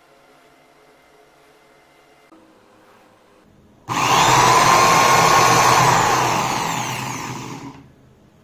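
Corded electric drill switched on about four seconds in, running at high speed and spinning a mixer's universal motor that is coupled to its chuck and used as a generator. It runs for about four seconds and winds down near the end.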